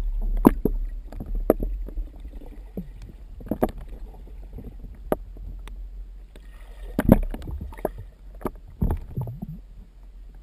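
Muffled water sound heard underwater as a swimmer moves: a steady low rumble with scattered knocks and thuds a second or more apart, the loudest about seven seconds in.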